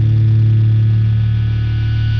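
A distorted electric guitar and bass chord from a metalcore recording, left ringing as one loud, steady low drone with thin high overtones, slowly fading toward the song's end.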